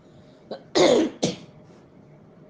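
A woman coughing: a small cough, then two louder coughs in quick succession about a second in.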